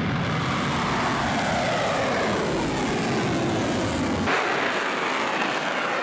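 Missile launch: the rocket motor's exhaust makes a loud, steady rushing noise, its pitch falling slowly over the first few seconds. About four seconds in the sound changes abruptly and loses much of its low rumble.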